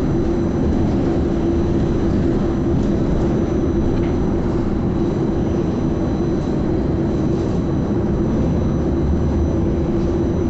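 Inside a Silver Line city bus while it runs: a steady noise from the drivetrain and road with a constant low hum, and no sudden sounds.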